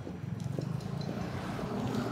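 Street traffic: a motor vehicle engine running with a steady low hum.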